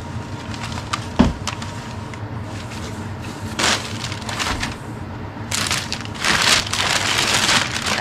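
White packing paper rustling and crinkling as a glass canister is unwrapped from a cardboard box, in two longer stretches in the second half. A single thump about a second in.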